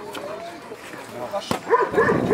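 A Doberman barking, with a few short barks near the end, among people's voices.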